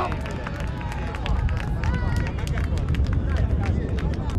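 Players' voices shouting on an outdoor football pitch, with scattered sharp claps, over a steady low rumble: celebration just after a goal.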